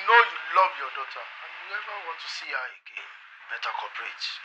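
Speech only: a caller's voice heard over a telephone line, thin and band-limited, talking steadily with short pauses.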